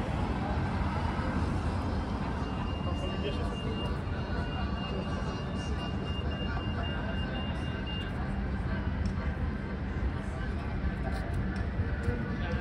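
Busy city street ambience: passers-by talking and traffic running, with a thin high steady tone for a few seconds in the middle.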